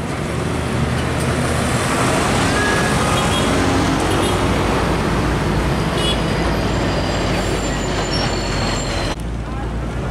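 Heavy diesel trucks passing close by on the road: engine and tyre noise, steady and loud. Near the end it turns duller and lower.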